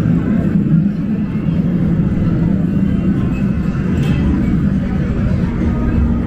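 Busy arcade ambience: a steady low rumble with faint electronic game tones and background voices.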